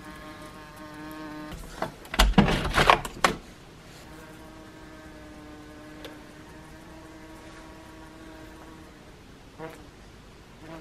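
A wasp buzzing steadily at one pitch, breaking off after about a second and a half and then buzzing again for about five seconds. In the gap, about two seconds in, comes a burst of loud knocks and bumps.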